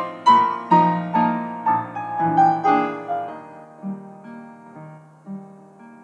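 Upright piano played solo: a melody stepping downward over chords struck about twice a second, easing into a softer, sparser passage about halfway through.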